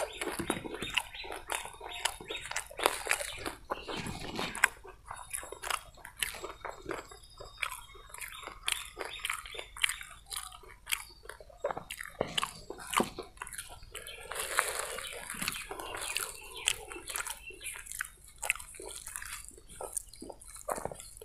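Close-miked eating by hand: chewing, biting and the wet squish of fingers mashing idli and vada, heard as a dense string of short moist clicks and crunches.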